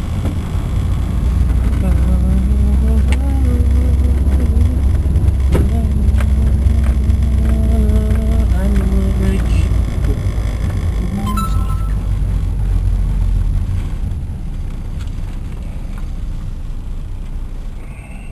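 Inside a moving car: a steady low engine and road rumble that eases off after about fourteen seconds. Over it, for the first ten seconds or so, a voice hums a wordless tune.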